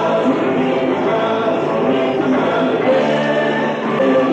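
Live southern rock band playing a song, with singing over the band.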